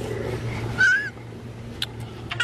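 A baby's single short, high-pitched squeal about a second in, rising then falling, over a steady low hum.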